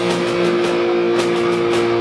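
A heavy metal band playing loud and live: distorted electric guitars hold a long sustained note over drums and cymbals keeping a steady beat.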